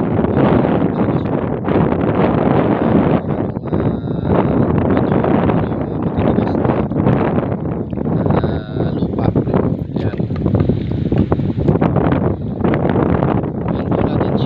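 Wind buffeting the microphone: a loud, steady rushing noise that rises and falls in gusts.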